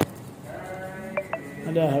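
Men's voices talking in a room, faint at first, then a man's voice louder near the end. Two short sharp clicks come a little over a second in.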